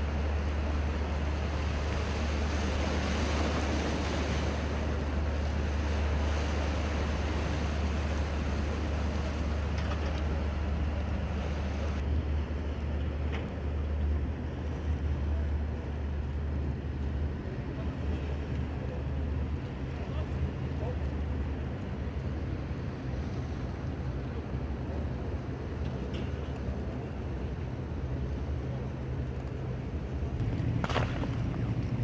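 Military combat boats' engines running steadily close by, a low drone under the wash of wind and water. The drone eases off after about twelve seconds.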